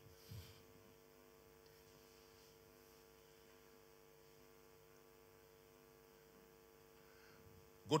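Faint, steady electrical hum from the sound system, made of several constant tones, with a brief soft sound just after the start. A man's voice comes in at the very end.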